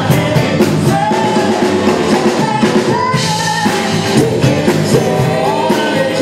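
Live band playing with drum kit, bass and electric guitar under a female lead vocal that holds long, sliding notes.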